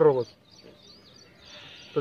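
A man's voice breaks off, and in the pause a faint bird call warbles. A faint, steady insect buzz follows before the voice resumes.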